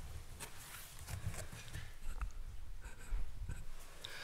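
Things being handled on a lectern close to its microphone: irregular soft rustles and clicks with low knocks and bumps.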